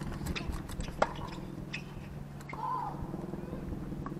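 A single sharp knock of a tennis ball about a second in, with lighter ticks and faint voices over a steady low hum.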